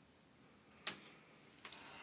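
A quiet room with one short, sharp click a little under a second in, then a faint hiss towards the end.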